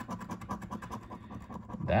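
A coin scratching the latex coating off a paper lottery scratch-off ticket in rapid short strokes.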